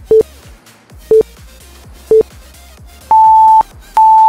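Interval timer counting down the end of a work interval: three short beeps a second apart, then a longer, higher-pitched beep that sounds twice to mark the switch to the next interval.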